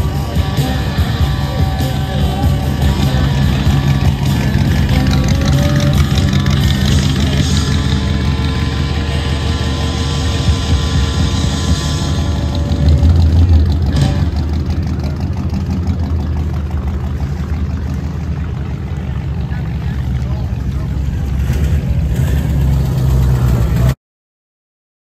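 Custom 1941 Ford's 350 V8 running with a low rumble as the car drives off, swelling loudest about halfway through. Voices and music sound along with it.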